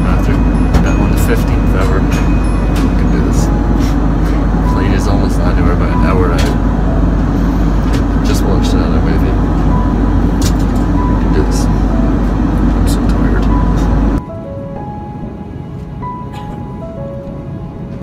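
Airliner cabin noise in flight: a loud, steady roar, with light background music notes over it. About three-quarters of the way through it cuts abruptly to a much quieter cabin hum.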